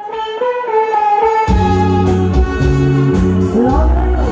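Live band starting a song: a lone melodic line of held notes for about a second and a half, then the bass and the full band come in together.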